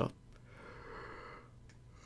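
A man's soft breathy exhale, a tired sigh that swells and fades over about a second.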